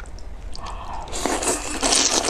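Wide, sauce-coated noodles being slurped into the mouth: a wet, hissing sucking noise that grows louder about a second in.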